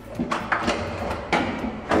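Hand knocking on a wooden door: about three sharp knocks, unevenly spaced.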